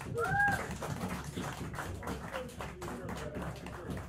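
Small club audience applauding with a patter of many hands, and a single rising-and-falling whoop just after the start.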